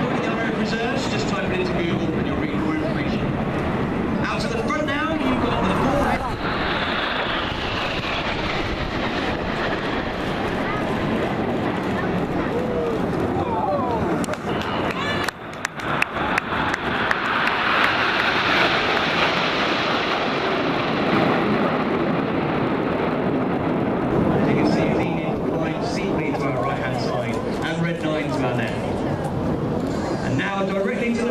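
BAE Hawk T1 jet trainers flying past in formation: a steady jet noise that swells to its loudest a little past the middle and then eases off, with voices in the background.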